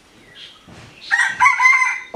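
A rooster crowing once, starting about a second in and lasting nearly a second.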